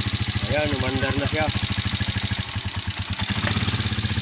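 A Rusi 150cc motorcycle's air-cooled single-cylinder four-stroke engine idling steadily with an even, rapid pulse, running again after its stiff kick starter was repaired.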